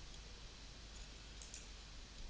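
Faint steady hiss of room tone with a soft computer-mouse click, two quick ticks close together, about one and a half seconds in.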